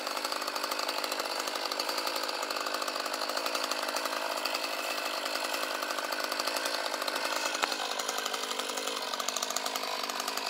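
Small two-stroke chainsaw engine running steadily. About seven and a half seconds in there is a click, and its pitch drops slightly.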